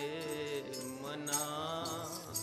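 Sikh Gurbani kirtan: a man's voice singing long held notes over a sustained harmonium, with jingling metallic percussion.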